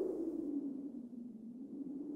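A quiet low sustained tone, a held note of background music, slowly fading.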